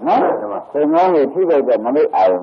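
A man's voice speaking Burmese in a Buddhist sermon, the pitch rising and falling in arched phrases.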